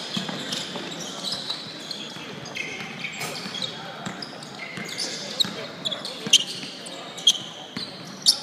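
Basketball game on a hardwood gym floor: the ball bouncing, short high sneaker squeaks, and players' voices in a large hall, with a few sharp knocks standing out in the second half.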